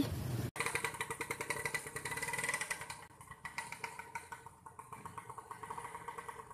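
Small engine of a red bajaj auto-rickshaw running at idle with a quick, even putter. It is fainter in the second half.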